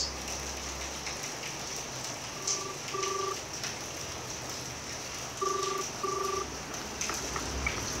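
Telephone ringing tone in a double-ring pattern, two short rings followed by a pause, heard twice. It is the opening of a recorded telephone conversation and sounds over a faint steady hiss.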